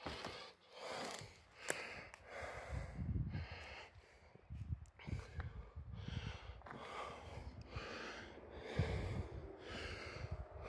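A person breathing hard from exertion, a breath about every second, with low thumps of footsteps and a few sharp clicks.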